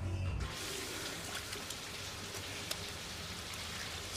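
Water running steadily from a washroom sink tap, coming in about half a second in as background music stops.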